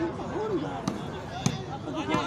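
Shouting voices of players and crowd, with a sharp smack of a volleyball being struck by hand about one and a half seconds in, after a fainter hit just before it.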